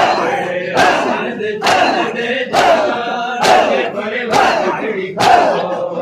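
A crowd of mourners beating their chests in unison (matam): a sharp slap of many hands about once every 0.9 seconds, with a crowd of men's voices chanting loudly between the strikes.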